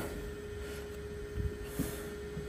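A steady hum at a single pitch over a low background rumble, with a couple of faint short sounds near the end.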